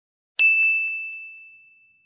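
A single bright ding from a subscribe-animation notification-bell sound effect, about half a second in, ringing one high tone that fades away over a second and a half, with a few faint ticks just after the strike.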